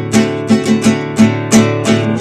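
Acoustic classical guitar strummed in a steady rhythm, about seven strums in two seconds, with the chords ringing on between strokes.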